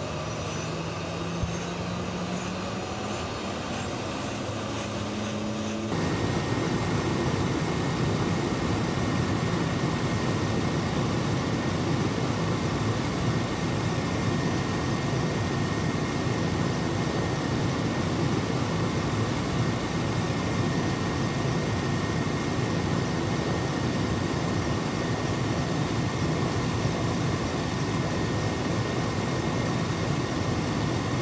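Military transport helicopter: for about six seconds a turbine whine slowly rises in pitch as the engines spool up, then, after a sudden jump in loudness, steady helicopter engine and rotor noise heard from aboard in flight.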